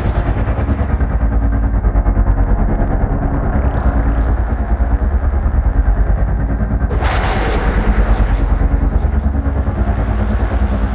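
Old-school 90s goa trance: a steady kick-drum beat over a heavy bass line. The treble is filtered away at first, a rising sweep comes in about three and a half seconds in, and the full high end bursts back about seven seconds in before closing down again near the end.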